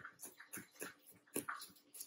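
A chef's knife slicing garlic cloves on a plastic cutting board: quick, light chopping strokes about four a second, the loudest a little past the middle.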